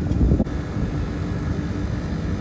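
Temperzone OPA 550 packaged air-conditioning unit running with both compressor stages on, a steady low drone that swells slightly in the first half-second. Its outdoor fans are just being signalled to start in heating mode, their 0–10 V control signal beginning to rise.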